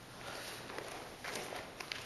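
Faint shuffling steps of bare feet on a padded mat, with a couple of soft scuffs in the second half.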